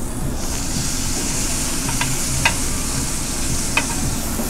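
Marinated beef (bulgogi) sizzling on a tabletop Korean barbecue grill. The hiss grows brighter about half a second in as the meat goes down, and three sharp utensil clicks sound over it.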